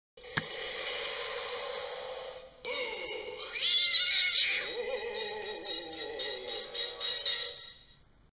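Eerie intro music: a steady sustained drone with high gliding notes about halfway through, fading out near the end. A short click sounds just as it begins.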